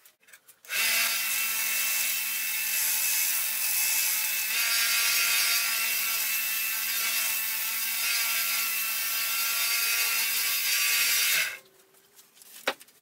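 Small bench belt sander running steadily for about ten seconds with a rasping grind over its motor hum, as something is held against the belt. It starts and stops abruptly.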